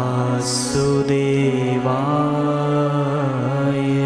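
A woman's voice singing a slow devotional chant in long held notes that glide between pitches, over a steady low drone. A brief hiss comes about half a second in.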